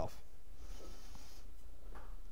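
A pause in speech filled by a steady low hum, with a faint brief rustle from about half a second to a second and a half in.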